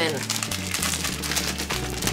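A clear plastic bag of ground cumin crinkling as it is handled and shaken, with a dense run of small crackles, over background music with a low bass line.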